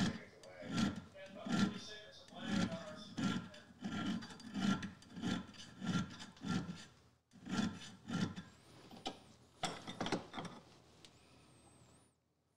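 Small auger bit file stroking steel on steel across the cutting lip of a brace auger bit, sharpening the edge by hand. About fifteen short strokes, a little more than one a second, with a brief pause past halfway, stopping shortly before the end.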